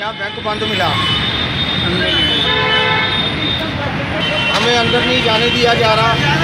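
Road traffic with a vehicle horn sounding for about a second, a little over two seconds in, under a man talking.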